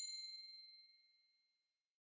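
Notification-bell ding sound effect: a single bright chime that rings out and fades away over about a second.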